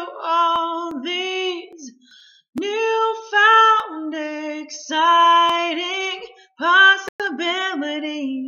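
A woman singing a pop song solo and unaccompanied, in sustained sung phrases with short breaths between them, about two seconds in and again near six and a half seconds.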